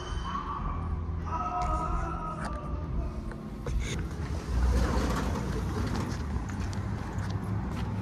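Low rumble of wind and handling noise on a phone microphone while walking out of the store, with scattered footsteps and faint outdoor traffic. A few short held tones sound in the first two and a half seconds.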